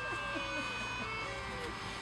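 Indistinct talking of onlookers and children, with a steady low rumble underneath.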